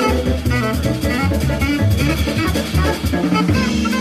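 Live acoustic jazz quartet playing: alto saxophone lead line over piano, double bass and drum kit with cymbals.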